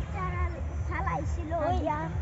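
A cat meowing: a few short, wavering calls over a steady low hum.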